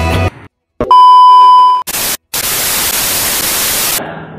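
Edited-in sound effects: the background music cuts off, a loud steady beep tone sounds for almost a second, and then TV-style static hiss follows after a short break.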